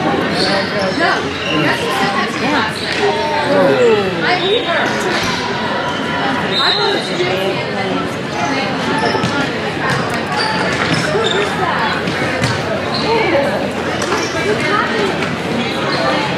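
Indoor hockey game in a large echoing hall: voices of players and spectators overlapping, with sharp knocks of sticks on the ball and the ball off the boards scattered through.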